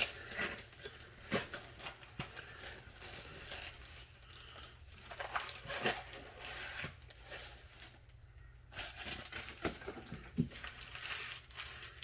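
Packaging of a 2021 Bowman Platinum trading-card mega box being handled: cellophane wrap crinkling, cardboard flaps and the inner box sliding and scraping, then foil card packs rustling. The sound is a string of light, scattered rustles and sharp clicks.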